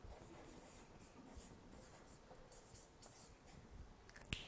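Faint scratching of a felt-tip marker writing a word on flipchart paper, in a series of short strokes.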